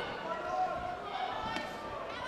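Voices shouting around a fight cage during an MMA bout, with a single sharp smack about one and a half seconds in as a strike lands.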